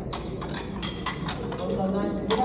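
Clatter of cutlery and dishes at dinner tables, a quick run of sharp clinks and clicks in the first second and a half, over the low murmur of chatter in a crowded banquet hall.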